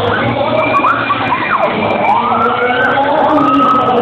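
Wailing, siren-like tones sliding up and down in pitch, one dropping steeply about a second and a half in and others arcing upward after it, over steady crowd noise.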